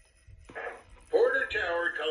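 Recorded crew radio chatter from the Lionel Vision Line Niagara locomotive's onboard sound system, starting about half a second in. It is a man's voice with a narrow, radio-like tone, part of the Legacy extended startup sequence.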